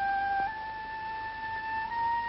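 A flute playing long held notes, stepping up a little in pitch about half a second in and again near the end.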